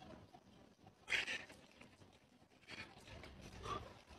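A person's hard exhalations with voiced grunts from the effort of skipping rope, three short bursts: a loud one about a second in and two softer ones near three seconds and near the end.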